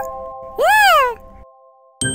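Cartoon cat meow: one call that rises and then falls in pitch about half a second in, over a held music chord that fades away.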